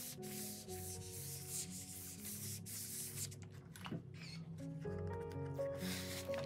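Oliso steam iron sliding back and forth over the paper backing of a fusible-web sheet, a dry rubbing sound, with a single click about four seconds in. Background music plays throughout.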